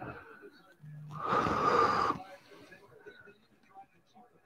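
A man's loud, breathy sigh lasting about a second, starting with a brief low voiced sound.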